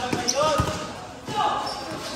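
A basketball being dribbled on a hard court, with a clear bounce about half a second in.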